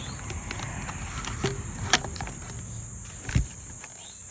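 Crickets chirring steadily, with a few sharp knocks and rustles as a plastic rain gauge is handled and set back into its bracket on a wooden post, the loudest knocks about two seconds in and again past three seconds.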